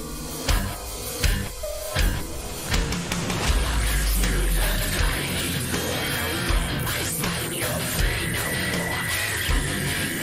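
Theatrical horror extreme-metal song played back. It opens with sparse, evenly spaced heavy hits, then the full band crashes in about three seconds in with a deep low rumble, and a dense, loud heavy-metal texture continues from there.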